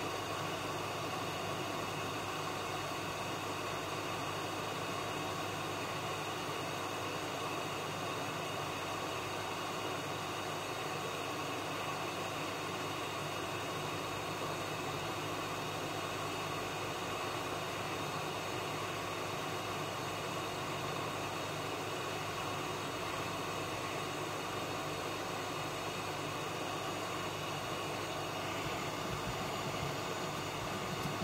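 Hot-air rework station blowing steadily while a BIOS chip is desoldered from a laptop motherboard: an even rushing noise with a faint hum in it.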